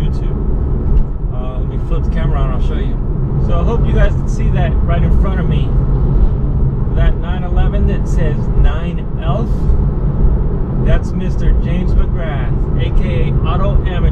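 A man talking over the steady low drone of a Porsche 911 cruising at highway speed, heard from inside the cabin as engine and tyre noise.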